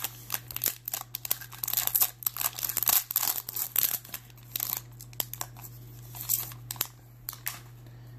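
A baseball card pack's wrapper being torn open by hand: a run of sharp crinkling and ripping crackles that is densest in the first few seconds and thins out towards the end.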